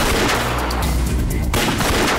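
Gunfire in a film shootout: many shots in quick succession, with heavier blasts at the start and about one and a half seconds in, over a tense background score.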